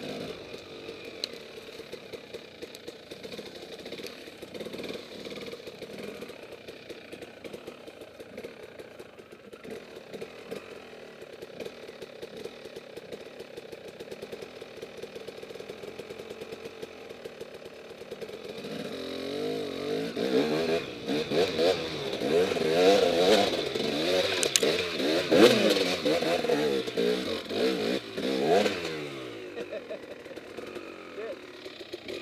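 KTM dirt bike engine running at low revs, then from about two-thirds of the way in revved hard again and again, its pitch climbing and dropping as the bike attacks a steep hillclimb. The revving dies away near the end as the attempt stalls in a big rut at the bottom of the hill.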